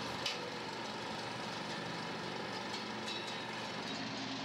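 Film projector running, a steady mechanical whir with a low hum, and a short click about a quarter second in.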